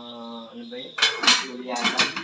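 Metal lid knocking and clattering onto a metal cooking pot: a few sharp, ringing knocks about a second in.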